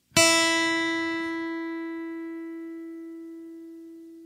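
A guitar's open first (high E) string plucked once and left ringing, a single clear note slowly dying away, sounded as a reference pitch for tuning up.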